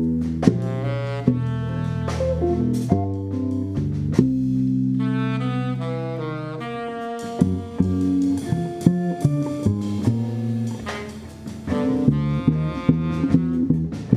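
Live jazz quartet playing: tenor saxophone lines over double bass and drum kit, with cymbal and drum strikes throughout and one long held note about four seconds in.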